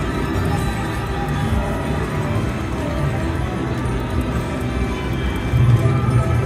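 Buffalo slot machine playing its free-games bonus music, a steady, continuous tune.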